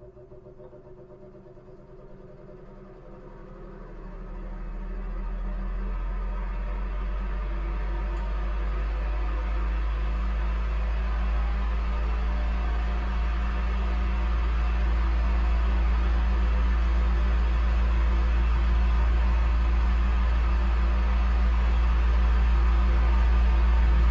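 Electric fan running: a steady low motor hum under an even rush of air. It swells up from faint over the first few seconds, then holds steady.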